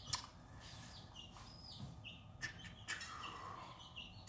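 Small birds chirping faintly in the background: short, high chirps that drop in pitch, repeated irregularly. A sharp click just after the start and a couple of fainter clicks later.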